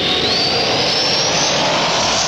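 A radio bumper's transition sound effect: a loud rushing whoosh with a whistling tone that climbs steadily in pitch.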